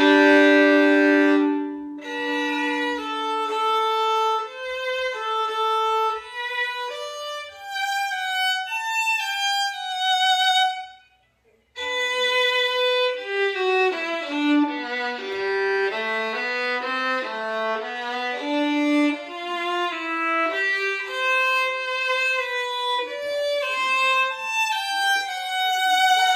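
A German-made 3/4-size violin bowed hard at full power. It opens loudest, with two notes held together for about two seconds, then plays a slow melodic phrase, stops briefly about eleven seconds in, and goes on with a lower, busier phrase.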